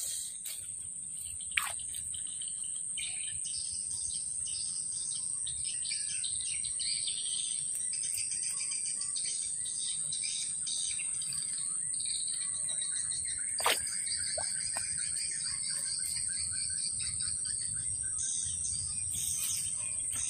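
Insects droning steadily at a high pitch, with birds chirping over them. There is a short sharp click about a second and a half in, and another about two-thirds of the way through.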